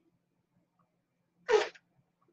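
A single short, sharp burst of breath from a woman, about one and a half seconds in, after near silence.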